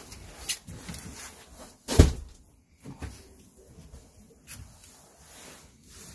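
Foam dinette cushions being lifted off and handled: scattered soft knocks and rubbing, with one heavy thump about two seconds in.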